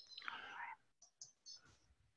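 Near silence, with a faint whispered breath from a man's voice in the first second, then a few faint short ticks.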